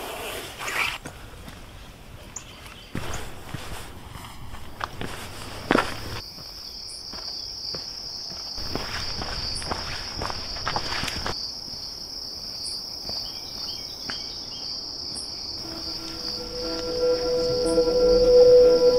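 Footsteps and rustling through leaves and brush, with a steady, high insect chorus coming in about six seconds in and running on. A soft music drone fades in near the end.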